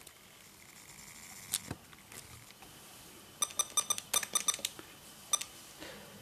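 Keys pressed on the Canon X-07 handheld computer's keyboard: a single click about a second and a half in, then a quick run of about a dozen key presses, each with a short pitched beep, and one more press near the end.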